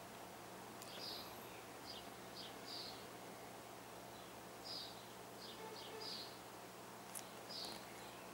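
Quiet room with a low steady hum and faint, short high chirps of distant birds scattered through, about ten in all. A soft click comes about a second in and another near the end.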